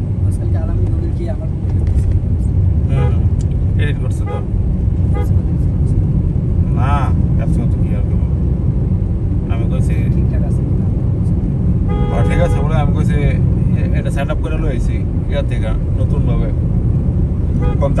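Steady low road and engine rumble heard from inside a moving car, with a vehicle horn sounding for about a second roughly twelve seconds in.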